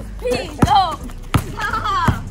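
Basketball bouncing on a concrete driveway, two sharp bounces well under a second apart during a dribble, with voices calling out around them.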